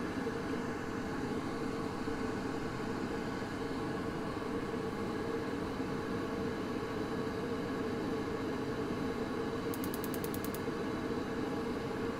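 Baxi Eco Four 24F gas boiler running with a steady hum from its fan and circulation pump during a repeat ignition attempt. Near the end the spark igniter fires a quick run of about ten sharp clicks in under a second, and the burner lights.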